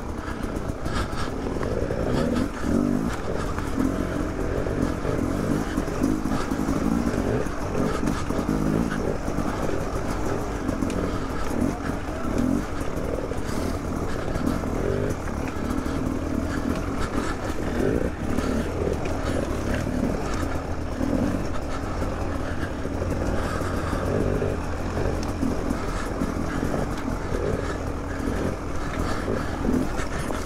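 Beta 300 RR two-stroke dirt bike engine running at low revs over rocky ground, the revs rising and falling with constant short throttle changes.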